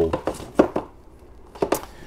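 Plastic DVD cases being handled on a shelf: two pairs of short clacks about a second apart.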